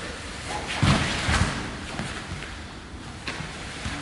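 Two people's bodies hitting padded martial-arts mats during a jiu-jitsu double ankle sweep done at full speed: two dull thumps about a second in, half a second apart, then quieter scuffing of gis and bodies on the mat.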